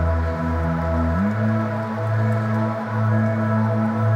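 Background music: sustained ambient chords over a low bass, the harmony shifting about a second in.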